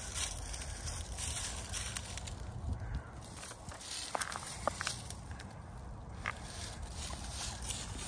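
Footsteps rustling and crunching irregularly through dry fallen leaves, with a few brief high chirps around the middle.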